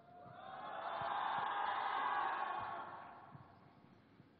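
Audience cheering in a large hall, swelling over the first second, holding, then dying away about three seconds in.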